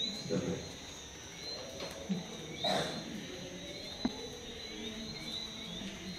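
A steady high-pitched chorus of small chirping creatures, with short chirps repeating about twice a second. Faint voices and a soft knock about four seconds in are heard over it.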